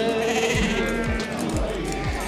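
Sheep bleating over a song's accompaniment with a steady beat of low thuds about twice a second; a held sung note fades out about half a second in.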